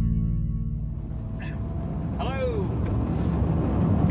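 Guitar music fading out in the first second, then the steady engine and road noise inside the cab of a Toyota HiAce van on the move.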